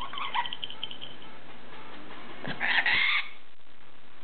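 A severe macaw feeding from a plastic bowl: a quick run of small clicks in the first second, then a short, harsh call a little before three seconds in.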